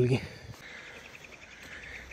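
Faint, steady insect trilling, a high, finely pulsing buzz that starts about half a second in.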